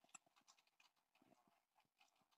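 Near silence with a few faint, irregular light clicks and taps from hands at a desk and computer keyboard.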